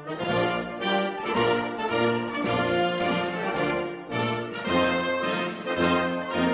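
Background music: orchestral music led by brass, with notes moving in a steady rhythm.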